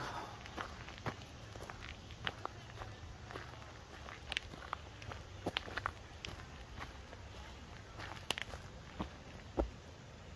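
Footsteps on a dirt woodland path strewn with leaves and twigs: an irregular run of soft crunches and clicks.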